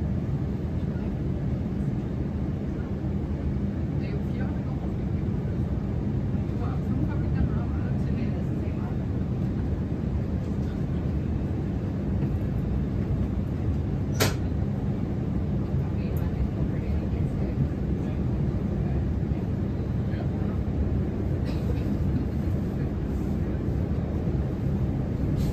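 Steady low rumble and rolling noise of an electric passenger train running, heard from inside the carriage, with one sharp click a little past halfway.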